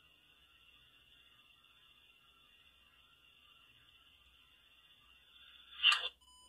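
Near silence with a faint steady high hiss, then one short sharp sound just before the end.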